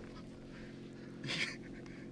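Steady low hum of a small fishing boat's machinery, with one short breathy gasp from a person about a second and a half in.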